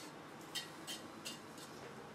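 A few light, short clicks about a third of a second apart, from handling a heat sink with copper heat pipes while cleaning it off.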